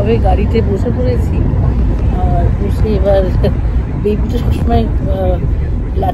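Steady low rumble of a Fiat taxi driving, heard inside its cabin, with a person talking over it.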